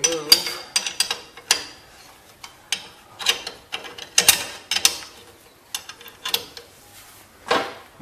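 Metal clicks and clinks of a hand wrench working the bolts on a steel spindle bracket: an irregular string of sharp ticks in small clusters, with a louder clink near the end.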